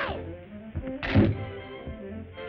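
Orchestral cartoon score playing, with a single loud thunk sound effect about a second in.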